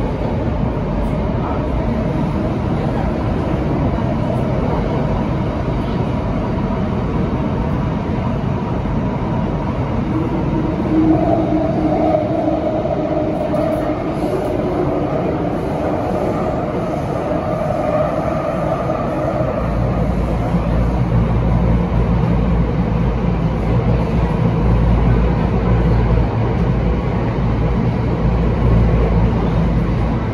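Bombardier Movia C951 metro train running between stations, heard inside the passenger car: a steady rumble of wheels and running gear. A wavering hum joins in the middle, and a deeper low rumble sets in about two-thirds of the way through.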